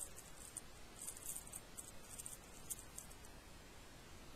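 Faint light crinkles and small clicks of little jewellery charms and their plastic packaging being handled, scattered through the first three seconds.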